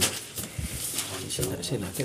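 Indistinct men's voices, with a few small knocks in the first second.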